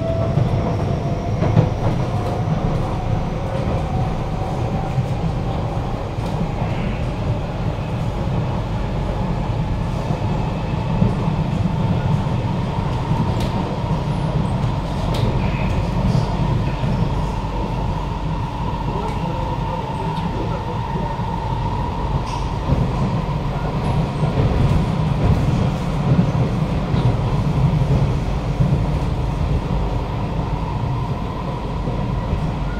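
Kawasaki–CRRC Qingdao Sifang C151B metro train heard from inside the carriage while running between stations: a steady low rumble of wheels on the track under a single motor whine. The whine rises in pitch over the first dozen seconds as the train picks up speed, then holds steady, with a few faint clicks along the way.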